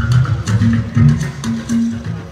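Live band music: plucked guitar and bass guitar playing a repeating figure, with sharp drum strikes over it.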